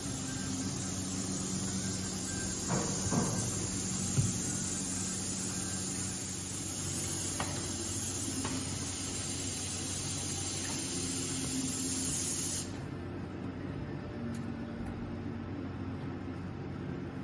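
Steady hiss of compressed air from a pneumatic armrest-load test rig, over a low steady hum. The hiss cuts off suddenly about three-quarters of the way through, leaving the hum and a few faint ticks.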